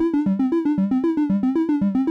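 Critter & Guitari 201 Pocket Piano arpeggiating a latched chord: a fast, even run of short synth notes cycling through the chord's notes.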